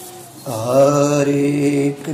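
Male voice chanting a devotional mantra, sliding up into one long held note about half a second in.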